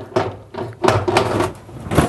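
Metal clicks and clunks of an oven door's hinge and latch being worked, with a few sharp knocks about a second in and another near the end.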